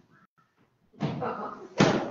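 A near-quiet pause, then voices with a chuckle start about halfway through, and a single sharp thump sounds just before the end, the loudest thing here.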